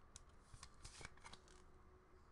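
Faint handling of trading cards and a clear plastic card holder: light scratches and several small clicks.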